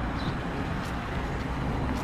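Pickup truck with a box canopy driving slowly along a gravel drive: a steady, low engine rumble.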